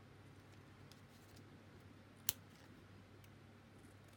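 Scissors trimming the edge off a paper tag: quiet cutting with one sharp snip a little over two seconds in and a few faint clicks, over a faint low hum.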